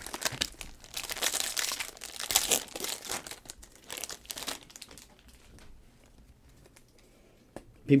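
A foil trading-card pack from a 2022 Donruss UFC box crinkling as it is torn open. The rustling is loudest in the first three seconds, then dies away about halfway through.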